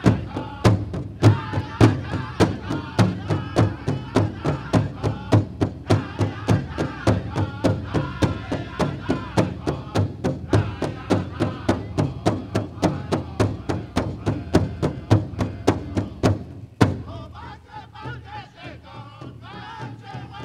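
Powwow drum group singing a jingle dress song: high, wavering voices over a fast, steady beat on a big powwow drum, about four strokes a second. The drum stops with a final hard beat near the end, and the voices carry on briefly without it.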